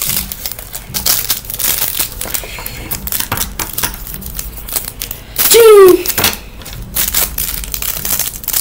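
Small plastic wrapper crinkling and rustling as a toy packet is unwrapped by hand, in a run of short crackles. About five and a half seconds in a child gives a short, loud vocal sound that falls in pitch.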